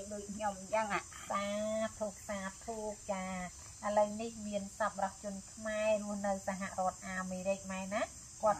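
A woman's voice reading aloud in a sing-song, chant-like way, with a steady high-pitched insect drone behind it.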